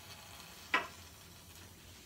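Faint steady hiss of food cooking on the stove, with one short sharp sound just under a second in.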